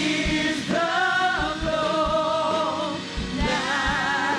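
Live worship music: a woman sings long held notes with vibrato into a microphone over a band with a steady drum beat.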